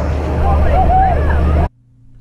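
Motorboat running at speed, with a steady low engine drone and the rush of wind and spray along the hull, and voices over it. It cuts off suddenly near the end, leaving only a faint steady hum.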